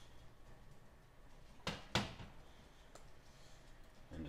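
Two sharp metal clicks about a quarter second apart, then a fainter one, as steel locking forceps are handled and unclamped to release a used cleaning patch.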